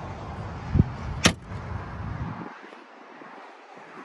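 A dull thump and then a sharp click about a second in, from handling the bow anchor-locker hatch under the boarding ladder. A low rumble of handling noise on the microphone stops about halfway through.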